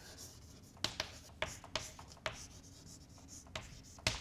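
Chalk writing on a blackboard: faint scratching with several sharp taps as the chalk strikes the board.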